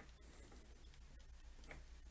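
Near silence with a low hum and a few faint ticks: a stylus tapping on a tablet screen while writing.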